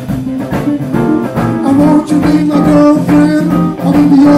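Live band playing: electric guitar lines over bass and drums.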